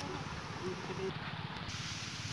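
Water gushing from an irrigation pump's hose outlet into a muddy furrow: a steady rushing hiss, with a low, even throbbing underneath.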